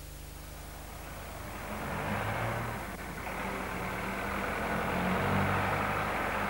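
Engine of a vintage car running as it drives closer along a street, growing louder from about a second in.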